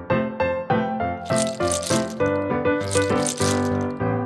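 A hand stirring through a heap of candy-coated chocolate Gems in a plastic toy microwave, rattling and clattering them in two bursts, the first a little over a second in and the second near the end. Light instrumental music with plucked notes plays throughout.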